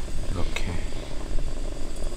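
A small pan of pasta simmering in oil and starchy pasta water over a camp stove burner, with a steady low rush. A fork stirs the noodles, and one sharp tap on the pan comes about one and a half seconds in.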